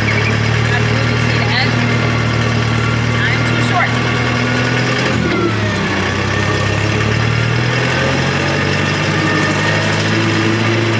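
Tractor engine running steadily, heard from inside the cab as it drives. The engine note drops about five seconds in and climbs back up over the next few seconds.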